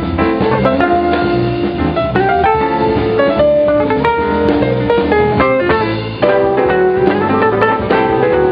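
A live jazz band playing, led by an archtop hollow-body electric guitar playing a quick line of notes over a low bass line and drums.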